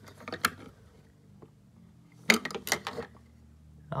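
Small die-cast toy tow trucks being handled: two short bursts of light clicks and knocks, about a third of a second in and again a little after two seconds.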